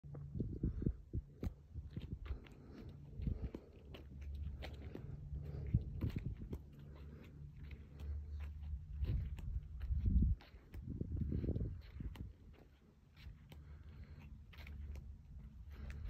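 Uneven low rumble with scattered clicks and soft knocks, the handling noise and footsteps of someone carrying a phone around on asphalt.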